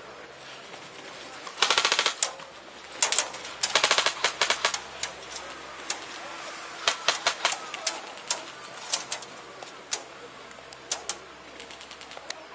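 Airsoft electric guns (AEGs) firing: a rapid full-auto burst of sharp clicks, a longer run of rapid bursts, then scattered single shots and short bursts.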